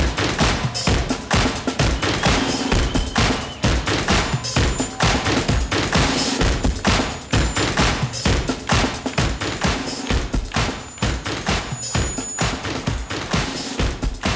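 Large crowd clapping hard and fast over loud music with a beat.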